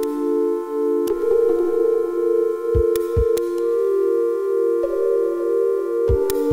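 Electronic music played on the Typebeat music app: sustained synth chords with a pulsing tremolo, changing about a second in and again past halfway. A pair of short, low drum thumps comes a little before the middle, with thin clicks along the way.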